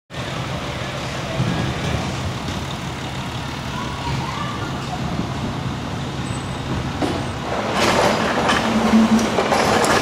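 Outdoor traffic ambience: a vehicle engine running with a steady low hum under road noise, growing louder near the end.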